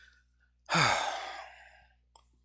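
A person sighs once: a breathy exhale about a second long, with a voiced tone that falls in pitch and fades out.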